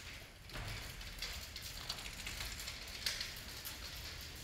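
Folded metal rollaway bed being wheeled across a stage floor, its frame and casters rattling and clicking, with a sharper knock about three seconds in.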